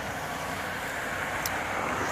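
A car driving past on the street, a steady tyre-and-engine hiss that grows slowly louder.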